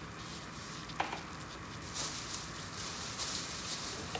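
Butter, corn syrup and sugar candy mixture bubbling and sizzling in a small saucepan on a gas burner, a fine crackle that grows louder about halfway through. A single sharp click about a second in.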